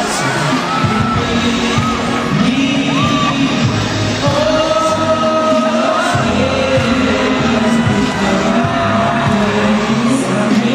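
A song sung with music, the graduating class's song, heard through a phone's microphone in a large arena; long held notes that slide between pitches.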